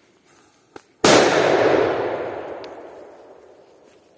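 Enigma FP3 firecracker (1.9 g) going off about a second in: one sharp bang followed by a long echo that fades away among the trees, a very clean sound.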